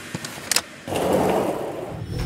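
A hard-shell rolling suitcase on a tiled floor. A few sharp clicks as its handle is grabbed, then from about a second in a steady rumble of its wheels rolling.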